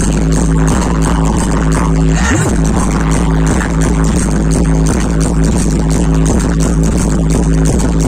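Loud DJ sound system playing electronic dance music with heavy bass and a steady beat; a short swoop in pitch rises and falls a little over two seconds in.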